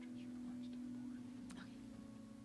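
Film soundtrack playing: steady held musical notes that shift from one pitch to another, with faint brief voice sounds over them.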